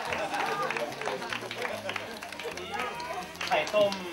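A group of young people laughing and talking over one another, with scattered hand claps and quiet background music underneath.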